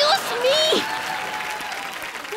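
Studio audience applauding, the clapping fading gradually, with a short voice over it in the first second and a faint held tone beneath.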